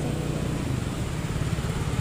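A motor engine running steadily at idle, an even low hum over street noise.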